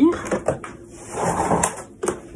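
Child car seat being handled and moved: a few light knocks early on, then a shuffling rustle with a sharp click in the second half.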